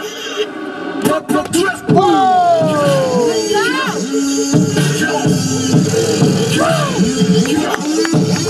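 Hip-hop beat playing loudly, with swooping, sliding tones over a steady low-end pulse; the top end briefly cuts out in the first second. Voices call out over the music.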